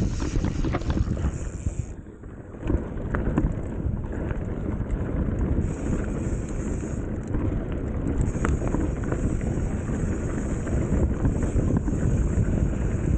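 Wind buffeting the camera microphone over the rumble of a Commencal Meta HT hardtail mountain bike's tyres rolling on a dirt trail, with frequent small clicks and rattles from the bike. The noise dips briefly about two seconds in.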